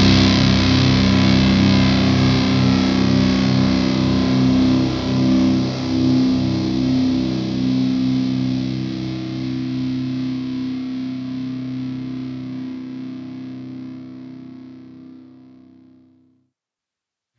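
Final chord of a stoner/doom metal song on heavily distorted electric guitar, held and ringing out with a slow pulsing underneath, fading away steadily to silence at the end of the track.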